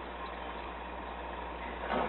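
Steady hiss with a constant low hum, with one brief knock near the end.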